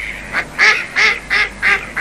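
Mallard duck quacking, a run of about five short quacks at roughly three a second.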